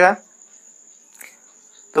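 A faint, steady high-pitched tone held in the background between spoken phrases, with one soft click a little past the middle.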